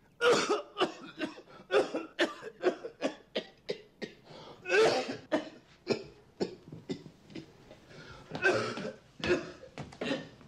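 A man's coughing fit: a long run of rapid, harsh coughs, two or three a second, with a few harder bursts among them. It is a smoker's cough that is getting worse.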